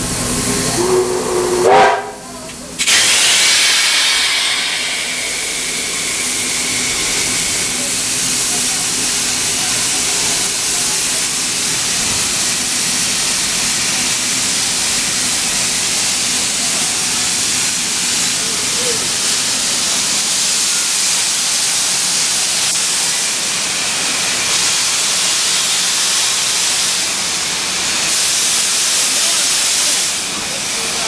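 Steam locomotive whistle sounding briefly with a rising pitch and cutting off sharply about two seconds in. A loud, steady hiss of escaping steam follows and continues to the end.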